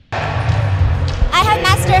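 A low rumble of background sound comes in abruptly, and a woman starts speaking over it a little over a second in.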